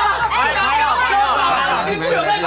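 Several people talking at once in lively, overlapping chatter.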